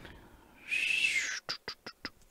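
A brief high whistling hiss, then four quick light clicks of metal tweezers and plastic prying picks against the phone's cracked glass.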